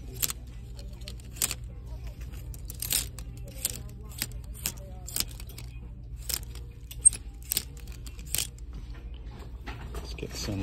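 Clothes hangers with metal hooks clicking along a metal clothing rack rail as pants are pushed aside one pair at a time: a string of sharp clicks, roughly two a second and unevenly spaced, the loudest about seven seconds in, over a steady low hum.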